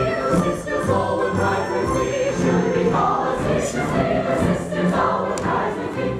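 A full chorus singing with a pit orchestra in a lively operetta ensemble number.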